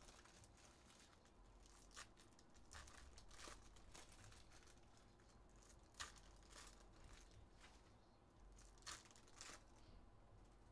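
Faint handling of baseball cards: cards shuffled and slid against a stack, with several short flicks a second or more apart.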